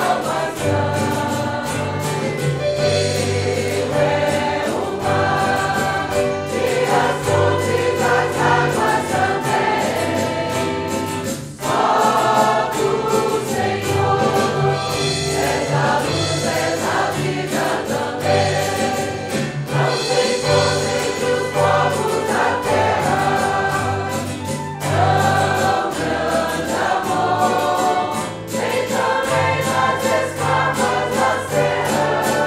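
A group of voices singing a Portuguese hymn together with instrumental accompaniment and a steady bass line, with a short breath between phrases about eleven seconds in.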